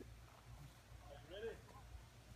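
Near silence: quiet outdoor background with a faint distant voice briefly, a little after a second in.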